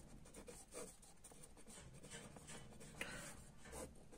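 Faint scratching of a felt-tip marker writing on paper, in short strokes.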